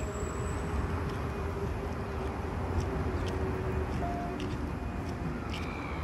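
Steady outdoor noise: a low rumble with a hiss over it, with faint short high sounds now and then.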